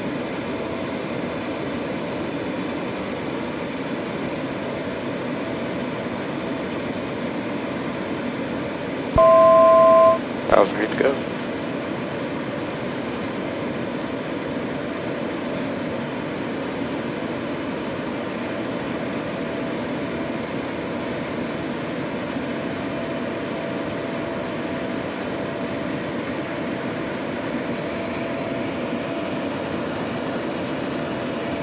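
Steady cockpit noise of a Pilatus PC-24 jet in a climb, an even hiss of engines and airflow. About nine seconds in, a loud two-tone electronic beep sounds for about a second, followed by a couple of short blips.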